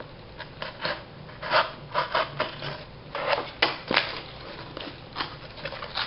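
Corrugated cardboard scraping and tapping against a large pipe as a cut piece is tried for fit across the pipe's end: a string of short, irregular rubs and knocks, with a few sharper clicks a little past the middle.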